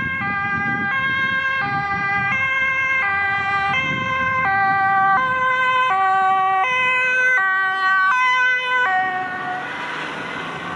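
Dutch ambulance two-tone siren alternating high and low about every 0.7 s. It grows louder as the ambulance passes, then fades near the end under road and tyre noise.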